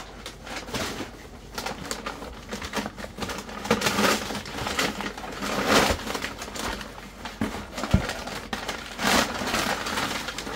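Crumpled brown packing paper rustling and crackling as it is pulled out of a cardboard box, in several loud bursts. A single dull thump comes about eight seconds in.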